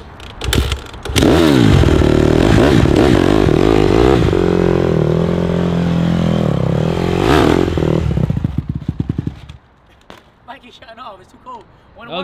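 Honda CRF150R's four-stroke single-cylinder engine revved hard while the dirt bike is ridden in tight circles on a cold engine, its pitch rising and falling. At about eight seconds the revs fall away with slowing firing pulses and the engine drops back to a quiet idle.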